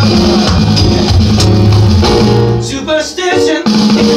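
Live band music played on keyboard and electronic drum kit, with a bass line under it. About two and a half seconds in, the drums and bass drop out for about a second, leaving a wavering melodic line, and then the full band comes back in.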